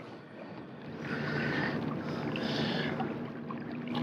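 Water rushing and lapping along the hull of a fishing kayak under way, swelling and easing unevenly, with a faint low hum underneath.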